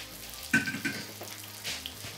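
Breaded pheasant escalope shallow-frying in rapeseed oil in a pan, a steady sizzle with small crackles, over minimum heat. A short clink about half a second in.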